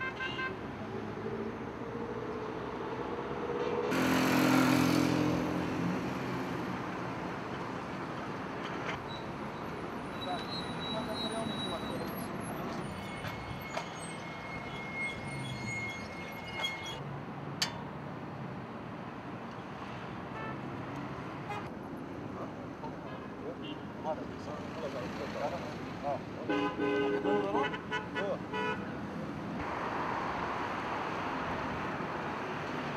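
Busy street sound of vehicle traffic with car horns and voices. It is loudest about four seconds in, and a run of short sharp sounds comes near the end.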